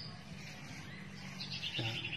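Birds chirping in the background, a quick run of high chirps near the end, over a steady low hum.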